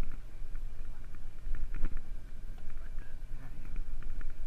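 Steady low rumble of a fishing party boat's engine running at idle, with a single sharp knock a little under two seconds in.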